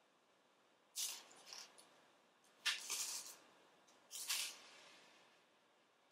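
Knit fabric rustling as it is handled while a seam is pinned, in three short bursts about one, three and four seconds in.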